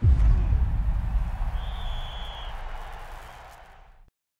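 A cinematic title-card sting: a sudden deep boom that rumbles and fades away over about four seconds, with a brief high ringing tone about halfway through.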